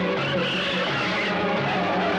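A car's tyres squeal briefly, from about half a second to a second in, over steady background film music.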